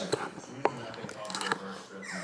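A few light clicks and rustles as a bag of dry puppy food is handled, over a faint voice in the background.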